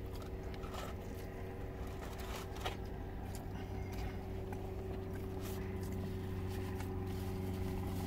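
Steady low hum of a car idling, heard inside its closed cabin, with faint scattered clicks of chewing and a paper burger wrapper being handled.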